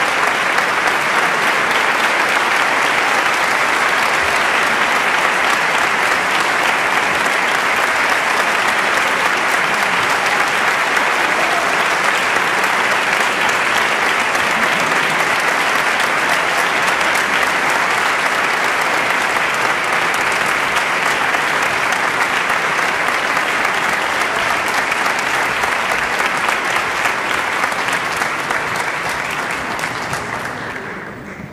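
Audience applauding steadily, tapering off near the end.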